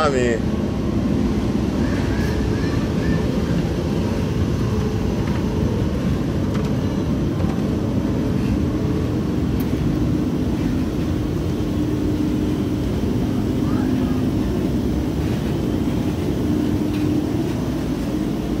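Steady low rumble of a Eurotunnel shuttle train running through the Channel Tunnel, heard inside the carriage, with a steady hum running under it.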